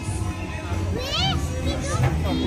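A child's high-pitched calls and cries, with a pause after the first, over fairground music.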